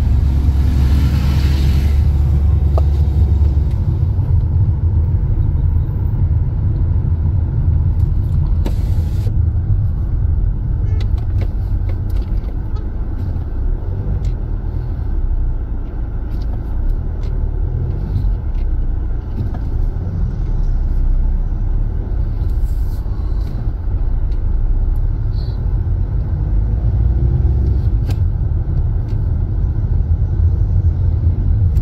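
Steady low rumble of a car driving through city streets, engine and tyre noise, with a few small knocks and a brief hiss about nine seconds in.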